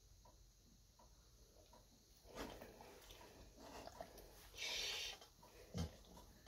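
Faint clicks of dog nail clippers at a claw, about two a second, then a dog breathing out hard through its nose, loudest about five seconds in, and a soft thump near the end.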